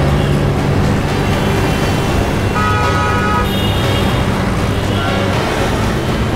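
Background music mixed with car traffic driving past. A brief horn-like tone sounds about halfway through.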